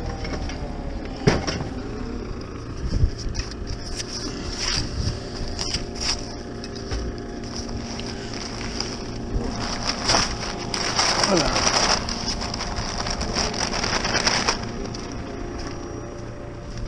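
JCB Loadall telehandler's diesel engine running steadily close by, while paper cement sacks are handled with rustling and knocks. About two-thirds of the way through there is a short whine falling in pitch.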